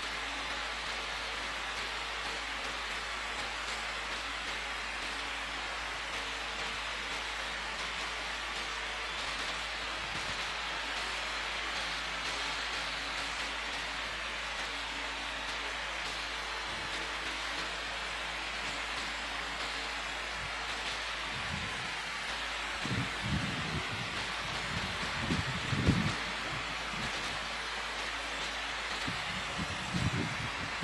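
Steady hiss of open-microphone room noise in a large church. A few dull low thumps come about 22 to 26 seconds in.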